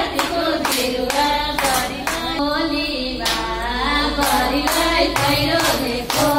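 A woman singing a Nepali teej folk song into a microphone, accompanied by hand clapping that keeps time at about two claps a second.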